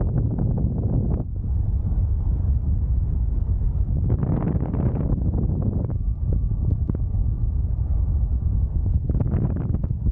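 Airflow buffeting the microphone of a harness-mounted camera on a paraglider in flight: a steady low rumble that swells into louder rushes about four seconds in and again near the end.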